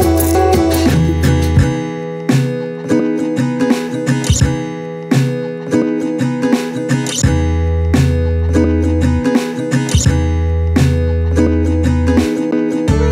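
Background music played on acoustic guitar, plucked and strummed over a low bass line that drops out and comes back a few times.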